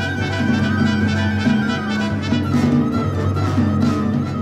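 Symphony orchestra playing, with brass and strings prominent over sustained low notes and a repeated lower figure. A high held note slowly falls in pitch.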